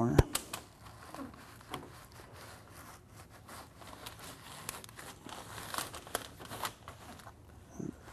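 Gloved hands folding and pressing DuPont FlexWrap NF self-adhered flexible flashing: a run of crinkling and rustling with scattered sharp little crackles.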